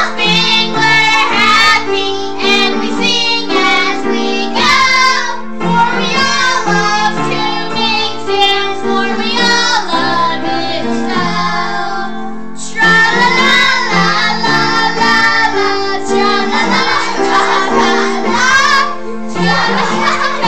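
Several girls singing a children's song together to upright piano accompaniment. Their voices dip briefly a little past halfway, then come back in louder.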